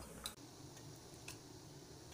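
Near silence: faint room tone with two faint short clicks, one a quarter second in and one just past a second in.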